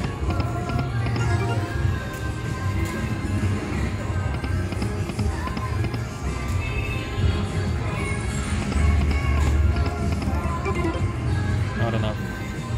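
Slot machine game music and reel-spin sounds from a Lock It Link Hold On To Your Hat slot, playing continuously through several paid spins, over casino-floor chatter.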